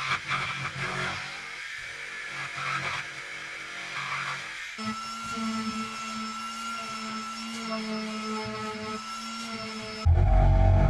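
Jigsaw cutting through a wooden board with a rough, uneven buzz. About halfway through, a different handheld power tool takes over, running at one steady pitch.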